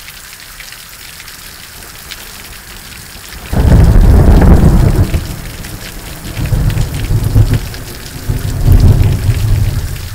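Steady rain, then about three and a half seconds in a sudden loud crack of thunder that breaks into a deep rolling rumble. The rumble swells again twice before fading, recorded on a mobile phone's microphone.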